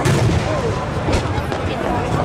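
Aerial firework shells bursting overhead: a loud bang right at the start and another about a second in, each with a deep rumble, over the chatter of a crowd of spectators.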